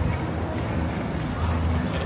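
Busy pedestrian street ambience: background voices of passers-by and footsteps on pavement, over an uneven low rumble of wind buffeting the microphone.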